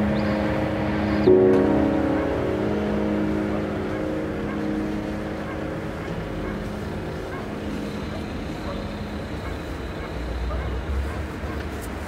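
Sound-art soundscape: sustained pitched drone tones, with a click and a change of notes about a second in, fading over the first few seconds into a steady noisy ambient bed, with a low rumble swelling near the end.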